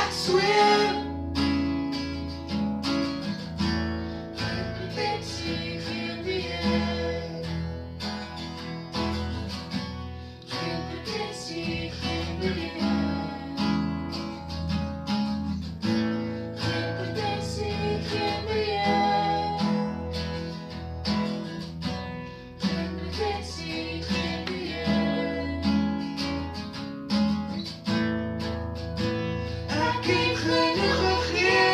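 Acoustic guitar strummed in steady chords, with a man and a woman singing an Afrikaans duet over it at times.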